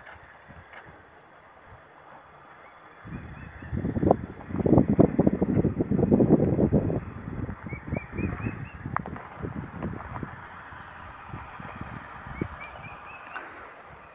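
Irregular crunching and rustling close to the microphone, loudest from about three to seven seconds in, then thinning to scattered knocks. A bird gives short runs of quick rising chirps now and then, over a faint, steady, high insect whine.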